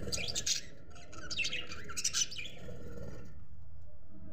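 Budgerigars chirping in quick bursts of high calls that stop a little after three seconds in, over a steady low hum.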